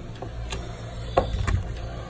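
A few short clicks and taps from hands handling a laptop's display lid and panel, over a steady low hum.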